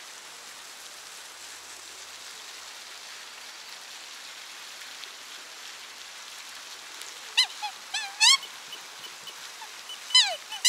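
Steady splash of a pond fountain, then, from about seven seconds in, a quick run of short, high, upward-gliding calls from black swans. The calls are much louder than the fountain, and the loudest comes a little after eight seconds.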